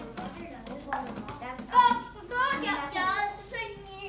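Children talking and chattering in a small classroom, the voices loudest in the second half.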